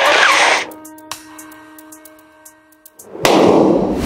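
Music fades to a soft held tone, then about three seconds in a sudden loud bang with a noisy tail.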